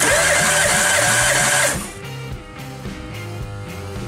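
Starter motor cranking a Citroen Berlingo's 1.4-litre 8-valve TU3JP petrol engine for a compression test of the third cylinder, starting with a rising whine and stopping after about two seconds. Background music plays throughout.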